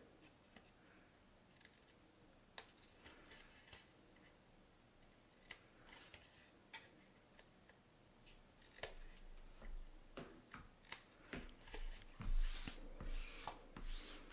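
Scissors making short, faint snips through cardstock as small flaps are miter-cut, with paper handling and rustling growing louder near the end.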